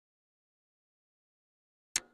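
Silence, broken near the end by a single sharp click with a short ringing tail.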